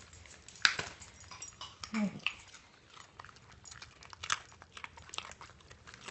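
A cocker spaniel crunching a raw carrot: a run of sharp, irregular crunches, the loudest about half a second in.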